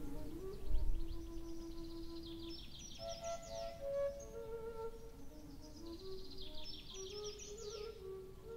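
Background music: a slow, soft melody of held flute-like notes, with two spells of quick, high, descending chirps laid over it.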